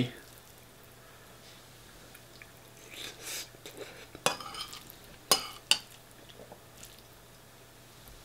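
Metal spoon scooping chilli and rice in a bowl: a soft scrape about three seconds in, then three sharp clinks of the spoon against the bowl between about four and six seconds in.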